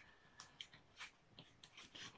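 Near silence with a few faint squeaks and rubs of a latex modelling balloon being twisted by hand into a small bubble.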